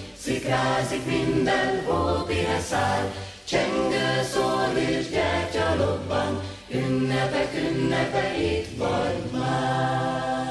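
Choral Christmas music: a choir singing with accompaniment over a moving bass line.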